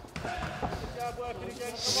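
Dull thuds from two boxers at close quarters, punches on gloves and feet on the ring canvas, with faint voices behind them.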